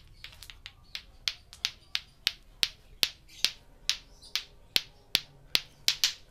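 Lato-lato clacker toy: two plastic balls on a string knocking together in a steady rhythm, about two and a half clacks a second. The first few clacks are soft and uneven, then they grow louder and regular.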